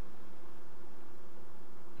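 Steady room noise: an even hiss with a faint constant hum under it, and no distinct event.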